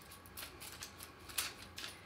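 Faint clicks and light rattles from a metal telescopic light stand as its folded legs are popped out, with one sharper click about one and a half seconds in.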